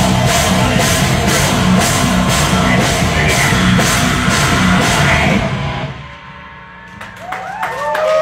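A live rock band, drum kit and electric guitars, plays loudly with an even beat, and the song stops about two-thirds of the way through. Near the end the audience cheers and whoops.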